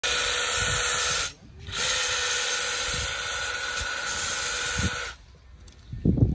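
Makita DUH601 18V cordless hedge trimmer running as it cuts a leafy shrub, a steady whine with a high hum. It stops for about half a second early on, starts again, and cuts off about a second before the end.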